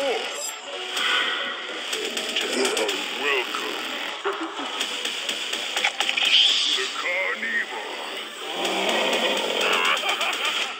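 Spooky music mixed with unclear, non-verbal voices and sound effects from Halloween animatronic props, with almost no bass.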